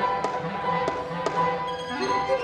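Live contemporary chamber sextet of two violins, viola, double bass, piano and clarinet playing: held high tones over a pulsing low figure, cut through by several sharp taps.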